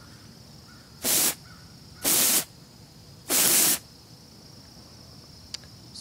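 Aerosol compressed-air duster can held upside down, giving three short hissing sprays about a second apart, the last the longest. Inverted like this, the can sprays its liquefied propellant instead of gas, which frosts whatever it hits.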